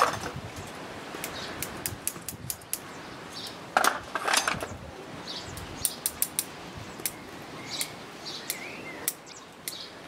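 Sharp bonsai scissors snipping twigs and leaves from an elm bonsai: a run of quick, crisp clicks, with two louder rustling cuts about four seconds in. A bird chirps briefly near the end.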